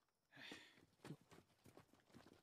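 Near silence: faint, low-level episode audio with a brief soft hiss early and a few faint soft taps.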